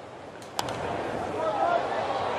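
A 94 mph fastball pops into the catcher's mitt with a sharp click about half a second in. After it, the ballpark crowd murmurs steadily with faint voices.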